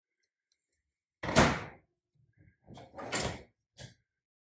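Microwave door being swung shut, with one loud clunk a little over a second in, then a second, quieter knock about three seconds in and a faint tick just before the end.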